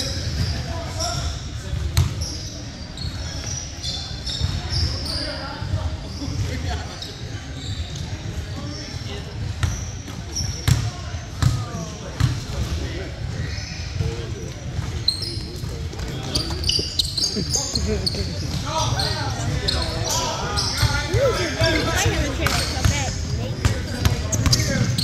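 Basketball bouncing on a hardwood gym floor, with indistinct chatter from players and spectators echoing around a large hall. The bounces come first as a free throw is set up and then as dribbling during live play near the end.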